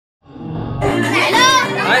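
Sound fading in from silence just after the start: music and high, raised voices, with a man beginning to say "Hi" at the very end.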